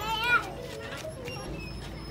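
A child's short, high-pitched shout in the first half second, over faint chatter of children playing.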